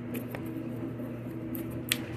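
Tarot cards being shuffled and handled: a few light clicks and flicks of card edges, the sharpest just before the end, over a steady low background hum.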